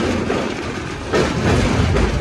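Passenger train coach running over a steel girder bridge: the wheels clatter on the rails over a steady rumble, growing louder about a second in.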